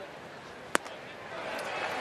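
A 96 mph four-seam fastball pops once into the catcher's mitt on a swinging strike three, about three quarters of a second in. Low crowd noise underneath grows louder in the second half as the fans begin to cheer the strikeout.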